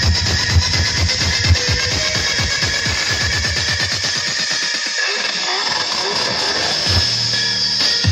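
Electronic dance music with heavy, fast bass hits played loud through a cabinet loudspeaker with twin 12-inch woofers, as a bass test. The bass drops out about five seconds in and comes back in heavy about two seconds later.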